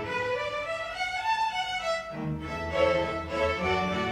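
A school string orchestra of violins, violas, cellos and double basses playing. For about the first two seconds the upper strings carry a rising line alone, then the cellos and basses come back in under them.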